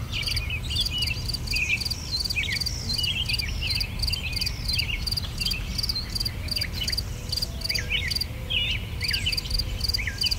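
Insects chirping in a fast, even pulse, with birds giving short, scattered chirps over it and a steady low rumble underneath.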